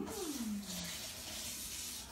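A steady rushing hiss of running water, with a short falling "hmm" from a voice in the first second.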